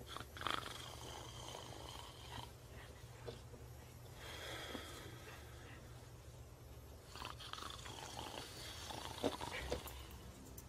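Faint human breathing in three long, drawn-out breaths, with a few small clicks, over a low steady hum.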